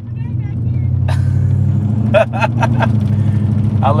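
Vehicle engine heard from inside the cab, picking up as the truck pulls away and then holding a steady low drone, with a sharp click about a second in.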